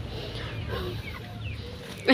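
Chickens clucking in short, scattered calls, with a low background rumble.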